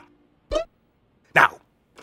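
Two short bursts of a man's chuckling laughter, about a second apart.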